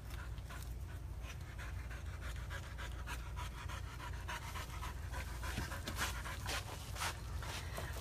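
A dog panting in short, quick breaths over a steady low hum.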